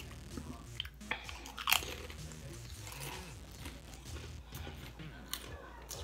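Potato chips being bitten and chewed close to the microphone: a run of sharp, dry crunches, loudest a little under two seconds in, then lighter chewing crunches.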